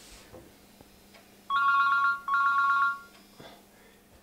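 Telephone ringing: two trilling two-note rings, each just under a second long, the first starting about one and a half seconds in.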